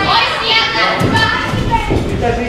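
Several raised voices shouting and calling out over one another, the sound of spectators or corners urging on boxers during an amateur bout in a hall.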